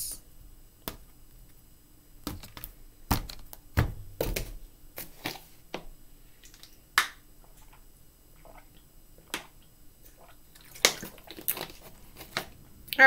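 Thin plastic water bottle handled and drunk from: scattered sharp crackles and clicks of the flexing plastic and cap, a second or more apart.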